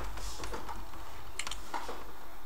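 A few soft, sharp clicks spread out over a steady low rumble.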